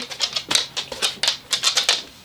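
A dog's claws clicking on a wooden floor as it turns around, a quick, irregular run of sharp clicks.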